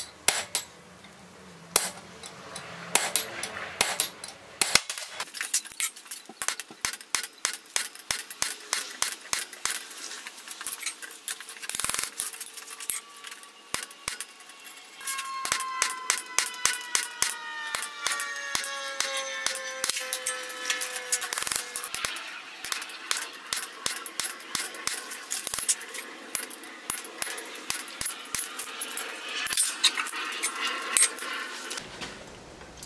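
Hand hammer striking a punch into a red-hot leaf-spring steel blade on an anvil, hot punching the pin holes: a quick, steady series of ringing metal blows, about three a second.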